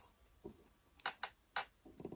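A few faint, light clicks of fingers on the plastic face of a GFCI receptacle, spread over the two seconds.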